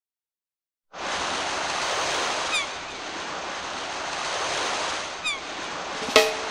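A recording of ocean surf, a steady wash of breaking waves, comes in abruptly about a second in after silence, with two brief falling whistle-like sounds over it. It serves as the lead-in to the next reggae track.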